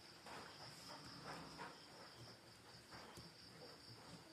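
Near silence, with a faint, steady high-pitched trill of crickets in the background and a few faint soft ticks.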